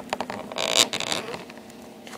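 Plastic twist-lock bulb socket being worked loose from a Chevrolet Impala headlight assembly: a few light clicks, then a short rasping scrape about half a second in and a smaller one about a second in.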